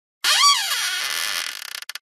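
Edited-in intro sound effect: a sudden burst of noise carrying a quick whistle-like pitch that sweeps up and back down, then fading out over about a second and a half, with a few clicks near the end.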